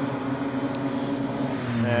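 Engine of a BMW E30 saloon race car running at racing speed, a steady engine note with a deeper, louder tone coming in near the end.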